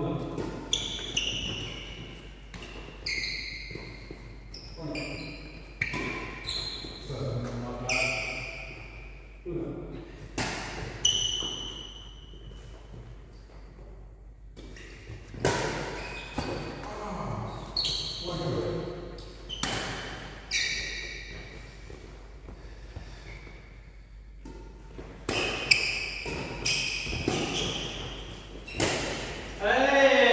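Badminton rally: sharp hits of rackets striking a shuttlecock, with shoes squeaking on the wooden sports-hall floor, all echoing in the large hall. The hits come irregularly, with two quieter spells between rallies.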